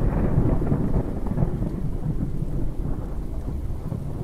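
Thunderstorm sound effect: a continuous low rumble of thunder with rain.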